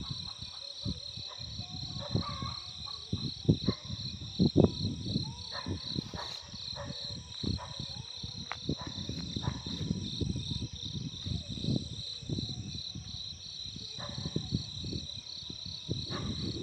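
Insects chirping in a steady, evenly pulsing high trill, over irregular low rumbling and knocks.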